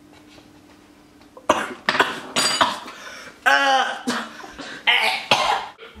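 A young man coughing and gagging on a spoonful of food: a run of harsh coughs beginning about a second and a half in, with a drawn-out, wavering retching groan in the middle.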